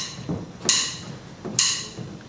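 Drumsticks clicked together in a steady count-in, setting the tempo for the song: two sharp wooden clicks a little under a second apart.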